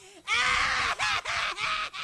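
High-pitched cartoon voices in a quick run of short repeated syllables, about four or five a second, broken by a brief gap just after the start.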